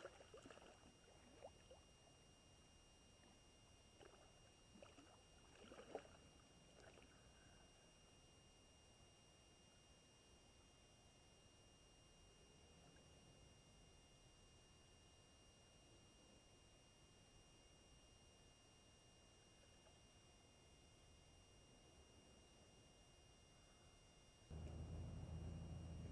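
Near silence: faint steady hiss with a thin high whine, a few brief soft sounds in the first seven seconds, and a louder low rumble starting shortly before the end.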